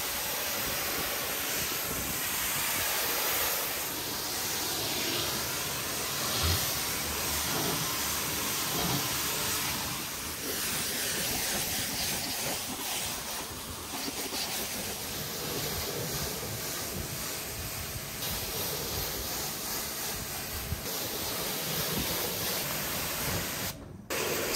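Pressure-washer jet hissing steadily as it rinses snow foam and mud off a car's bodywork, rising and falling a little as the lance moves. It cuts out briefly just before the end.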